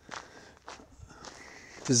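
A man's footsteps while walking, a few faint steps spaced through a pause in his talk. His voice comes back in just before the end.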